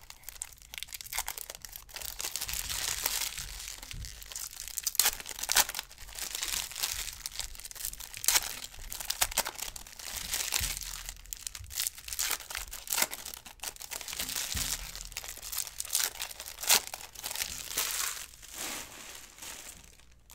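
Trading-card pack wrappers being torn open and crinkled, with cards shuffled and stacked by hand: a long run of irregular crisp rustles and crackles.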